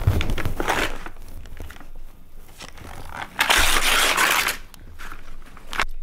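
Gift-wrapping and tissue paper being torn and crumpled by hand in bursts of rustling, with a soft thump at the start and the loudest tearing about three and a half seconds in.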